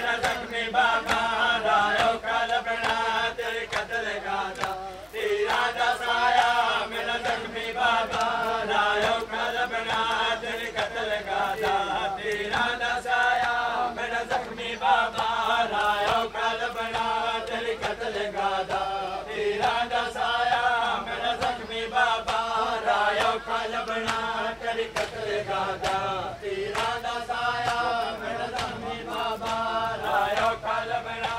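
Voices chanting a nauha, a Shia mourning lament, in a short phrase repeated about every two seconds, with sharp slaps of hands beating on chests (matam) running under the chant.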